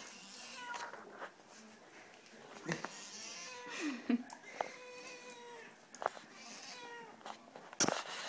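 Domestic cat giving a string of short, steady-pitched meows and yowls while being petted, the complaint of a cat that dislikes the stroking. A few sharp knocks from handling, the loudest near the end.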